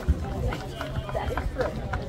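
Indistinct voices of people talking, over a low, unsteady rumble.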